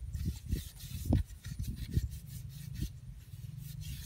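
Hands rubbing and packing damp soil around plastic pipe ends set in an earth bank, with a few dull thumps, the loudest about a second in.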